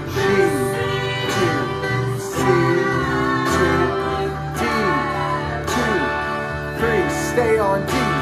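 Electric guitar strumming chords, about one strum a second, with a man's voice singing the melody over it.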